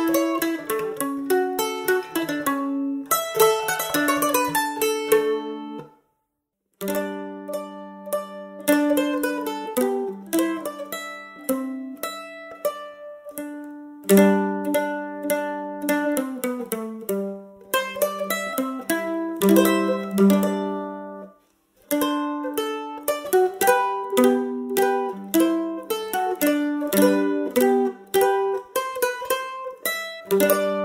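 Solo acoustic mandolin playing a traditional Polish folk melody, single notes picked in quick succession. The sound stops dead for under a second twice, about six seconds in and again about twenty-one seconds in.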